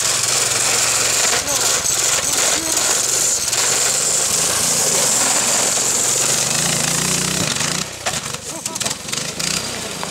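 Small gasoline engine of a homemade motorized lawn chair running hard at full throttle, a loud continuous engine noise that drops away about eight seconds in as the chair drives off across the snow.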